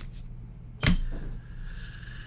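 Trading cards being handled on a desk: one short, sharp snap about a second in, over a faint steady hum.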